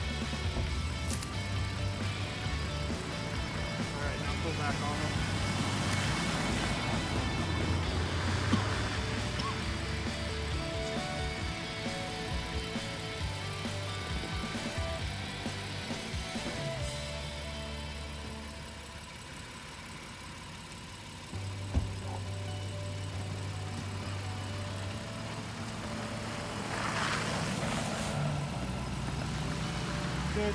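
Background music over the low, steady running of a car engine at idle, with a single sharp knock about two-thirds of the way through.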